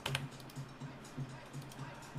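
Faint, irregular light clicks of a computer keyboard and mouse.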